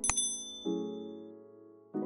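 A subscribe-animation sound effect: a click followed by a bright bell ding that rings out and fades over about a second. Soft piano background music plays underneath.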